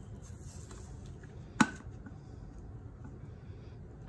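A small plastic bottle being handled: a single sharp knock about one and a half seconds in, over quiet room tone.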